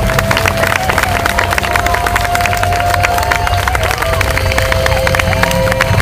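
Music played over a loudspeaker, with long held notes, as a crowd claps and cheers.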